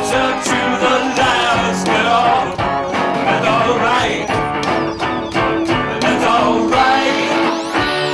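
A live band plays an upbeat rock song with electric guitar, drums and keyboards, with a steady beat.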